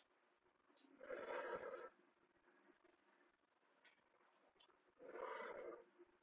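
A man's two effortful exhalations, one about a second in and one about five seconds in, each lasting under a second, breathed out with the strain of lunges; near silence between them.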